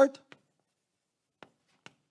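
Chalk writing on a blackboard: three short, sharp ticks of the chalk striking and stroking the board, the last two close together near the end.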